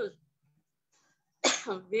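A woman singing a Hindi devotional song over a video call. Her sung line stops just after the start and the sound cuts to dead silence for about a second. It then comes back abruptly, about a second and a half in, with a sharp breathy burst as she starts the next line.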